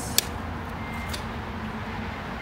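A J1772 charging connector clicking as it latches into a Nissan Leaf's charge port: one sharp click just after the start, then a fainter click about a second later, over a steady low outdoor hum.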